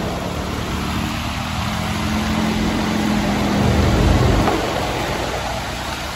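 Scooter running over a rough, broken road, with wind and road noise. A low engine hum swells to its loudest about four seconds in, then eases.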